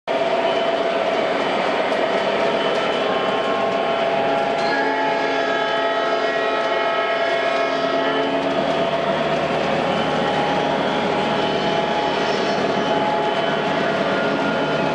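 O gauge MTH model diesel locomotive running on the layout, its onboard sound system playing a steady diesel engine sound over the rolling of the train on the track. A few extra steady notes join for several seconds midway.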